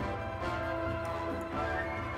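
Orchestral music playing back, with held chords across several sections of the orchestra.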